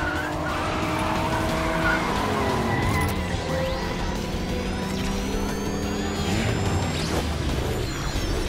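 Sound-effect race-car engine running hard with tyres skidding, mixed with background music; a thin rising whine builds from about three seconds in.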